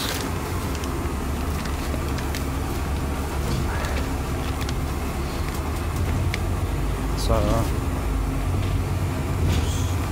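Double-decker bus in motion heard from inside on the upper deck: a steady low engine and road rumble, with a few light clicks and rattles.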